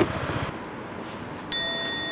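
A single bright bell-like ding about one and a half seconds in, a clear high ringing tone that fades slowly. Before it, a low rumbling noise dies away about half a second in.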